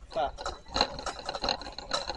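Indistinct talking, with a few short clicks and some rattling under it.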